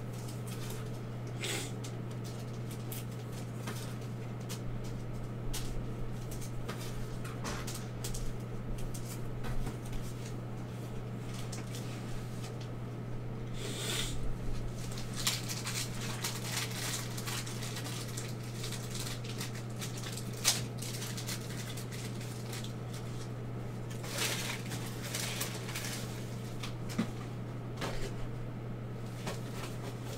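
Scattered light clicks and rustles of trading cards and foil pack wrappers being handled on a table, over a steady low electrical hum; the sharpest click comes about two thirds of the way in.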